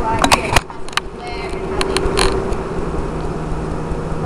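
Indistinct talk over a steady low hum, with a few sharp clicks in the first second and again around two seconds in.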